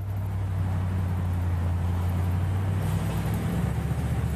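Steady low rumble of road traffic, a motor vehicle running close by, swelling over the first second and then holding even.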